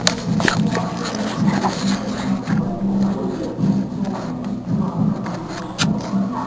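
Muffled background music from a dance group rehearsing in the same room, with a few sharp knocks and rustles from the camera being handled.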